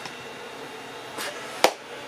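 A short whoosh about a second in, then one sharp click, over a steady room hiss.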